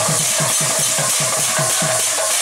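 Kirtan music led by a two-headed barrel drum played in a fast, even run of bass strokes that each drop in pitch, over a held tone and a bright hiss high above.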